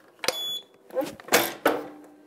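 Heat press timer beeping once, a short high electronic tone signalling that the pressing time is up. About a second and a half in there are two louder rushing clunks as the press is worked to open.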